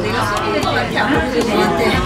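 Indistinct chatter of several voices, with no clear words.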